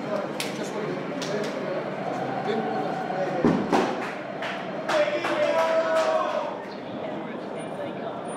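Indistinct chatter of several people talking at once, with a few sharp clicks and knocks scattered through it.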